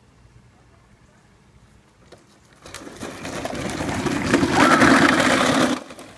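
Plastic wheels of a kid's low three-wheeled ride-on trike rolling and rattling over grass, getting steadily louder as it comes closer, then cut off abruptly near the end.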